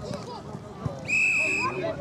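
Referee's whistle blown once, a single steady blast of under a second about a second in, ending the play. Scattered voices of players and spectators continue underneath.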